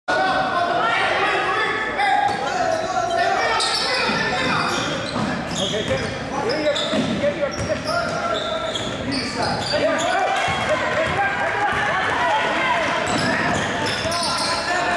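Basketball game on a hardwood gym floor: the ball bouncing, sneakers squeaking in short high chirps, and players and spectators talking and calling out, echoing around the hall.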